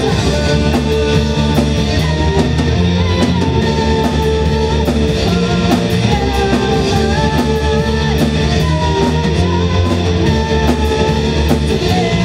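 Symphonic metal band playing live: electric guitar, bass, drums and keyboards, loud and continuous, with a held melody line that wavers above the band and steady cymbal strokes.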